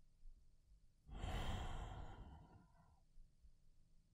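A man's single long sigh, a breathy exhale that starts about a second in and trails off.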